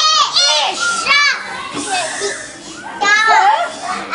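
Young children speaking in high voices, in short separate utterances with brief pauses between them.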